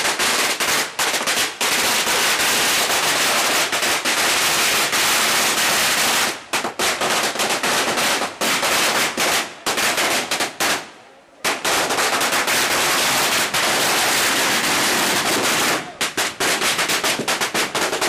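Strings of firecrackers going off in a dense, rapid crackle of bangs. The bangs keep up almost without break, with short lulls about six seconds in and near the end, and a brief near-pause a little after ten seconds.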